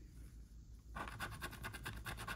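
A handheld scratcher tool scraping the latex coating off a scratch-off lottery ticket, starting about a second in as quick, even back-and-forth strokes.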